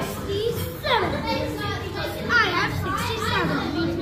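Children's voices chattering and calling out in a busy room, high and swooping up and down in pitch.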